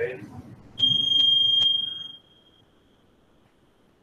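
Electronic alert beep from a ship's bridge console: one steady high-pitched tone lasting about two seconds, starting about a second in, with three sharp clicks during it, then fading out.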